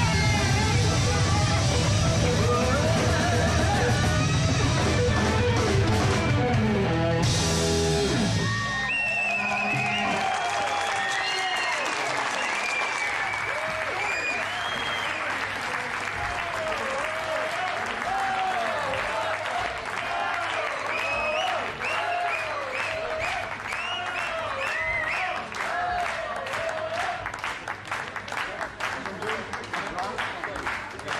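A live rock band with guitar plays the final bars of a song and stops about eight seconds in. The audience then cheers and claps, and the clapping grows towards the end.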